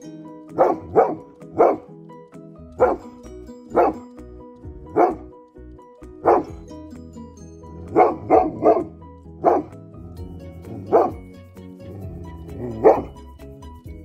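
A large dog barking: about a dozen deep single barks at uneven spacing, some in quick runs of two or three. These are alert barks at a delivery man outside the window.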